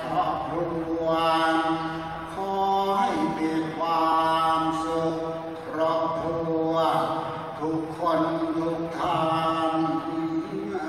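Ritual chanting: voices intoning a mantra in long, nearly level held tones, in phrases of two to three seconds with short breaks between them.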